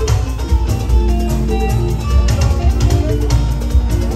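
Loud live band music: a plucked guitar melody over heavy bass and drums.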